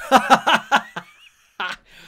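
A man laughing: a quick run of about five short chuckles in the first second, then one more brief laugh sound about a second and a half in.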